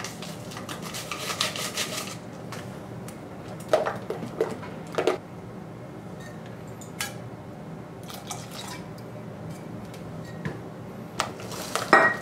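A utensil stirring thin batter in a mixing bowl, scraping and clicking against the bowl in quick runs, with a few louder knocks about four seconds in and again near the end.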